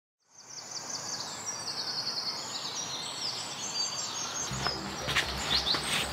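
Outdoor ambience fading in: birds chirping and trilling over a steady background hiss. A little past four seconds in, a low pulsing hum joins.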